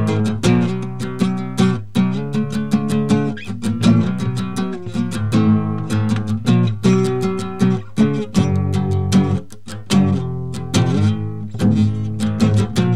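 Music of a guitar strumming chords in a steady, quick rhythm.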